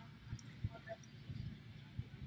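Faint chewing of a French fry, heard as a few soft, scattered mouth clicks and small knocks.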